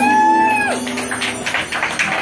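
A live steel-pan band's song ends on one long held note that slides down in pitch at its end, followed by a few scattered hand claps.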